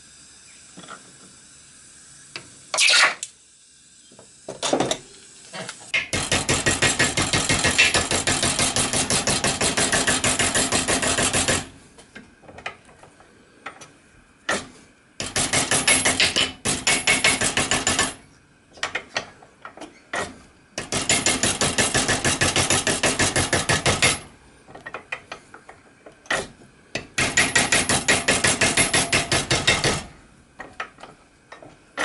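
Small hammer tapping rapidly on an annealed copper disc held in a bench vise, flanging the edge of a copper boiler end plate. The taps come in four runs of about three to six seconds each, many taps a second, after a couple of single metal knocks near the start.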